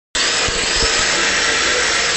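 Electric motor and gear drive of a Tamiya TT-01D radio-controlled drift car running at speed: a steady, high, drill-like whine with a hiss, as the car slides on a concrete floor, and a couple of low thumps in the first second.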